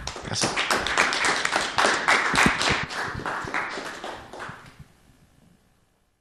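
Audience applauding, the clapping fading out about five seconds in.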